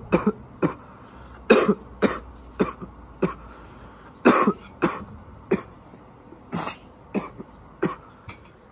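A man coughing repeatedly after a hit of cannabis smoke from a glass bong: about a dozen short coughs at irregular intervals, some coming in quick pairs.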